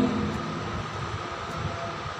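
Steady background noise with a faint even hum in a pause between words; no distinct event stands out.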